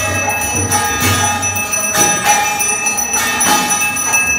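Temple aarti bells ringing steadily, with sharp metallic strikes about twice a second and a low drum beat in the first half.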